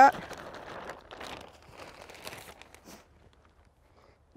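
Potting soil pouring out of a plastic bag of container mix into a large plastic nursery pot, the bag crinkling as it empties. The rustle fades out about three seconds in.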